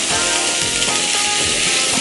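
Food frying in a pan, a steady sizzle, with background music underneath.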